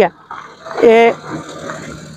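Small Suzuki Ravi pickup driving slowly past over a broken, gravelly road surface, with a short, loud, steady-pitched call about a second in.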